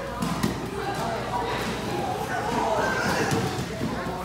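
Many children's and adults' voices talking and calling over one another in a large hall, with scattered short thuds of feet and bodies on the mats.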